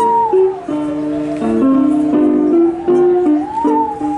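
Bowed musical saw playing a slow melody: one pure, singing tone that slides smoothly between notes, dipping lower through the middle and climbing back near the end, over chords played on a keyboard.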